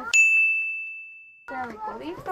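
A single high ding: a sharp strike and then one clear tone that rings and fades away over about a second and a half, with no other sound beneath it, typical of a sound effect laid over a cut in the edit. Distant voices and market bustle come back near the end.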